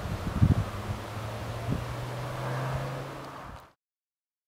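A motor vehicle's engine humming steadily, edging slightly higher and louder, over gusty wind with a few low thumps of wind on the microphone about half a second in. The sound cuts off abruptly shortly before the end.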